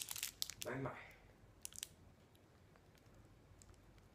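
Plastic wrapper of a Mars bar crinkling and tearing as it is opened, in a few short crackles during the first two seconds, then only faint ticks.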